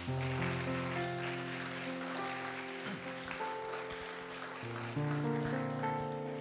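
Background score music: soft held chords that change about five seconds in.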